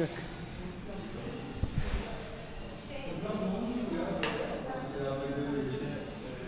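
Indistinct speech, softer than the nearby narration, with a low thump about two seconds in and a sharp click a little after four seconds.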